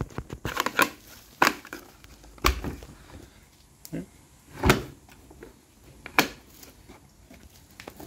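Sharp plastic clicks and knocks, about half a dozen spread a second or so apart, from the filter cover of a Hilti VC 40-MX wet/dry vacuum being unlatched and its flat pleated filter handled.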